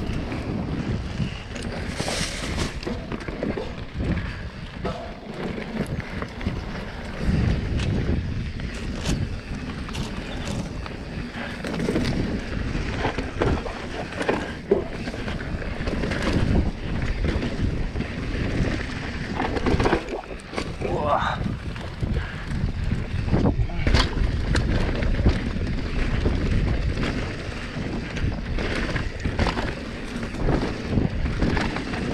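Santa Cruz Nomad full-suspension mountain bike descending a dirt trail at speed: tyres rolling over hardpack and leaf litter, with frequent sharp knocks and rattles from the bike over bumps. Heavy wind noise on the camera microphone runs throughout.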